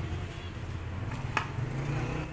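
Potting soil being pressed down around a palm in a plastic pot with a small hand tool, with one sharp tap about a second and a half in, over a steady low background rumble like distant traffic.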